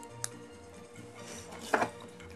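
Quiet handling noise of small plastic LEGO pieces: one sharp click about a quarter second in and a brief louder knock near the end, over a faint steady hum.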